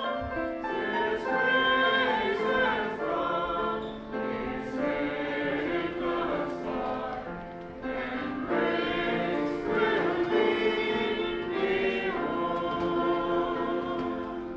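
Choir singing a hymn with long held notes.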